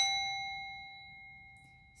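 A small metal bell struck once, ringing with a clear pure tone and several higher overtones that fade away over about two seconds.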